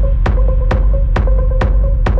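Techno music from a DJ set: a steady, heavy bass under a held mid-pitched tone, with a sharp percussive hit on every beat at a little over two beats a second.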